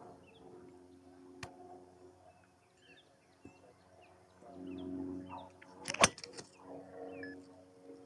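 A Mizuno ST190 golf driver striking a ball once: a single sharp crack about six seconds in. Under it run a low steady hum and faint bird chirps.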